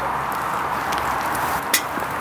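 A steady hiss with small crackles at a small wood-burning stick stove, and a sharp metallic clink near the end as a steel pot is set down onto the stove.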